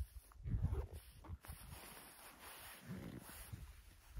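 Rustling and handling noises from a jacket and backpack as gear is sorted, in irregular bursts, the louder ones about half a second in and around three seconds.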